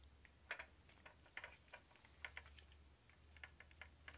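Faint, irregular clicking and ticking of the small ball rolling and knocking along the plastic tracks inside a Perplexus Rookie maze sphere as it is tilted.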